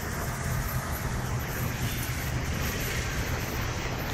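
Bus engine running steadily, a continuous low rumble with no break.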